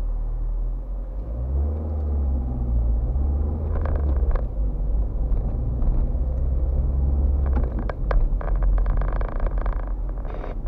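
Car engine and tyre noise heard from inside the cabin: the engine note rises about a second and a half in as the car pulls away, holds steady, then eases off near the end. A few short knocks and rattles come in, most of them in the last couple of seconds.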